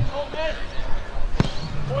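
One sharp thud of a goalkeeper's boot striking a football on a goal kick, about one and a half seconds in.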